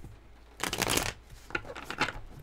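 A deck of tarot cards shuffled by hand: a dense half-second rush of cards flicking together about half a second in, then a few lighter card taps near the end.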